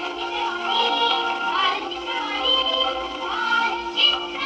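Marathi children's TV title song: a sung melody over instrumental backing.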